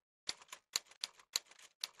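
Typewriter key strikes as a sound effect: about five separate clacks, unevenly spaced, each one typing a character of an on-screen caption.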